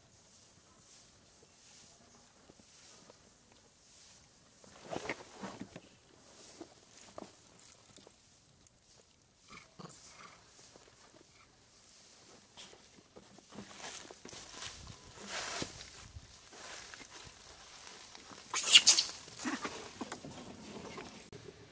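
Macaques giving occasional short calls over a quiet background, with a brief, loud, high-pitched outburst near the end.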